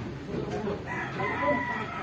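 A rooster crowing faintly, one drawn-out call beginning about a second in.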